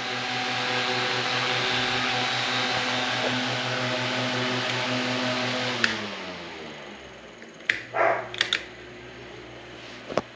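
Mainstays 9-inch high-velocity fan running on its highest speed: a steady motor hum under the rush of air from the blades. About six seconds in there is a click, and the motor and blades spin down, falling in pitch and level. A few short clicks or knocks come near the end.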